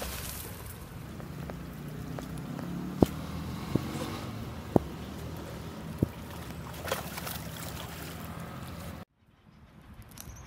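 A steady low motor hum runs on, with four sharp clicks near the middle, and cuts off abruptly about a second before the end.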